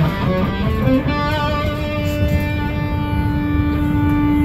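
Electric guitar playing a few quick notes, then one long sustained note from about a second in.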